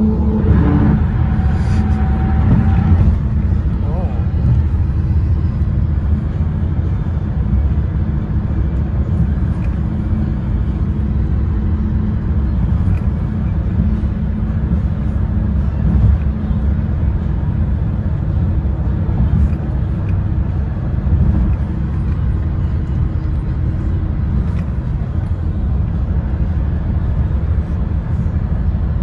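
Steady low rumble of tyre and engine noise inside the cabin of a car moving at highway speed.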